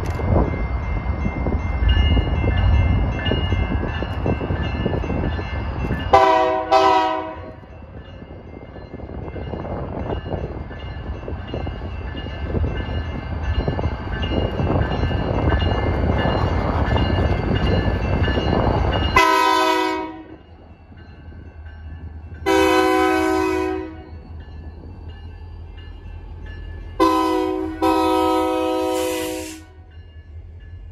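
BNSF 1637, an EMD SD40-2 diesel locomotive, rumbling past close by as its air horn sounds several blasts: two short ones about six seconds in, two single blasts of about a second each past the middle, and a short then a longer one near the end. After the locomotive has passed, the heavy engine rumble gives way to a steady low hum.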